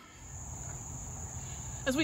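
Steady, high-pitched outdoor insect chorus, a continuous thin whine with a low background rumble beneath it.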